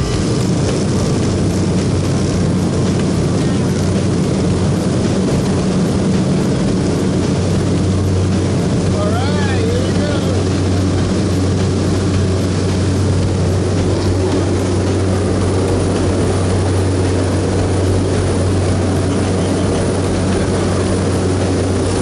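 A propeller plane's engine running at high power, heard inside the cabin through the open jump door as a loud, steady drone with a deep hum, during the takeoff run and climb-out.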